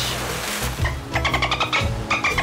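Dolphin chattering sound effect: a rapid, pulsed, high-pitched run of squeaks that starts about halfway in, over steady background music.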